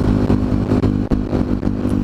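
KTM motorcycle engine running at a steady speed while the bike is ridden along the road.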